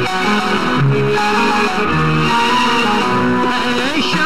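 Instrumental interlude of a 1960s Hindi film song, the melody carried by plucked strings over a steady accompaniment.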